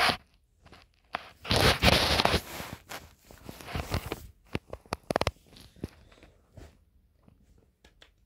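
Handling noise from a phone being repositioned with socked feet: fabric rubbing and scraping right against the microphone, with scattered clicks and knocks. The loudest rustling comes in a burst of about a second, some one and a half seconds in.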